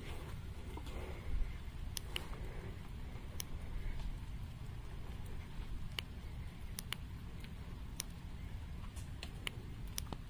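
Rain falling, with scattered single drops ticking sharply every second or so over a low steady background rumble.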